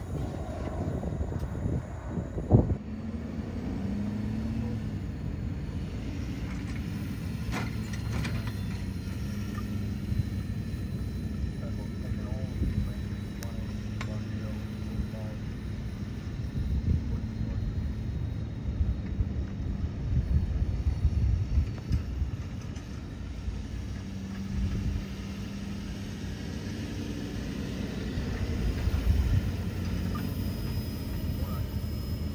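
A Ford F-550 fire truck's engine running steadily as it drives across beach sand, a low drone with a brief rise in pitch about four seconds in. Wind buffets the microphone throughout, and there is one sharp knock about two and a half seconds in.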